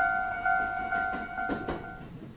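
Japanese railroad crossing alarm bell ringing its repeated two-tone ding, about two strikes a second, over irregular train wheel clatter. The bell fades and stops near the end as the barrier rises after the train has passed.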